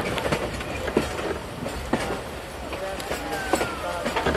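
Train running along the track, heard from on board: a steady rumble with a few sharp clacks of the wheels over rail joints.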